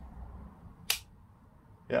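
A light switch clicking once, about a second in, turning on the LED replacement tube.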